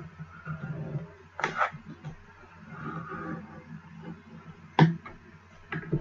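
Scoring tool drawn along the grooves of a scoring board over cardstock, a faint scraping, with sharp taps and clicks as the card and tool are set against the board, once about a second and a half in and again near the end.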